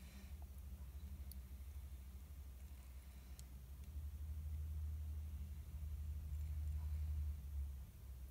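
Quiet room tone: a low steady hum that grows somewhat louder about halfway through, with a few faint clicks. The slow paint pour itself makes no clear sound.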